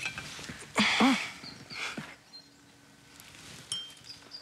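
A woman's breathy, sigh-like 'oh' about a second in, then quiet small movement sounds, with a brief light clink of a china cup against its saucer near the end.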